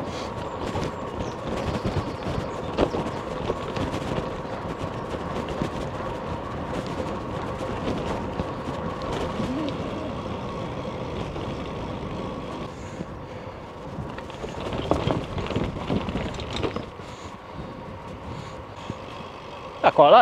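Road bike's tyres rolling along a narrow tarmac trail: a steady rolling noise with a faint steady hum, easing a little in the second half.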